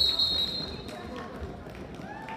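Referee's whistle: one steady, high blast lasting a little over a second, stopping the wrestling bout, apparently for an illegal full nelson hold.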